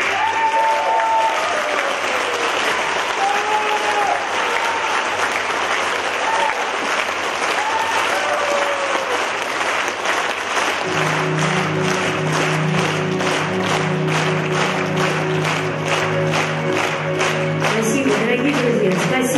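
Concert audience applauding after a song. About eleven seconds in, a steady low keyboard chord comes in under the applause.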